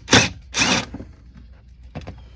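Cordless impact driver with a T20 bit running in two short bursts, backing a bolt out of a plastic dash panel.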